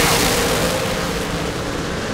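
Two Top Dragster race cars' engines at full throttle, launching off the starting line side by side. The loud roar eases slightly in the second half as the cars pull away.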